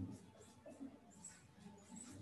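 Faint squeaks and scratches of a dry-erase marker writing on a whiteboard, in several short strokes.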